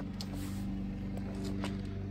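A steady low mechanical hum, like a motor running, with a few faint clicks.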